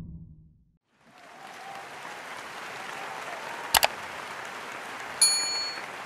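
Steady applause. Partway through comes the quick double click of a subscribe-button animation, and about a second and a half later a short bell-like notification ding.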